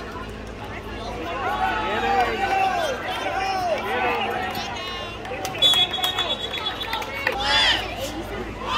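Many voices shouting and yelling over one another, football players and spectators reacting to a play. About five and a half seconds in, a whistle sounds steadily for over a second, then one voice shouts loudly near the end.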